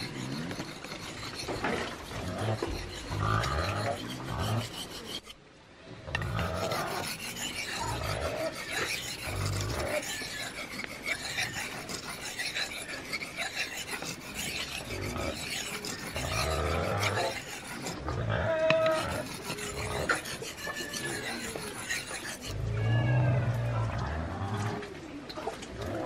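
A steel knife blade being sharpened by hand on a natural whetstone: repeated scraping strokes of steel on stone, with a brief pause about five seconds in.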